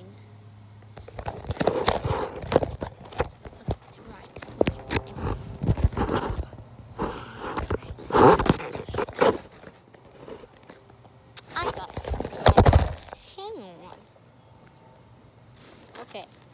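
Close handling noise on a phone microphone: a long run of knocks, bumps and rustling as the phone is moved about and rubbed against the trampoline's mesh safety net, loudest about eight seconds in and again just before the end. This is followed by a few brief vocal sounds.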